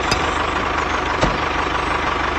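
Tractor engine idling with a steady, fast, even chug. Two light clicks come over it, one at the start and one just past the middle.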